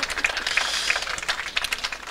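Audience applause: many scattered hand claps from a seated crowd.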